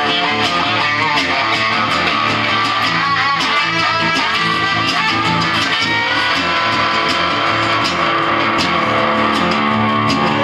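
Instrumental guitar break: a Telecaster-style electric guitar plays a lead line over a strummed acoustic guitar, with no singing.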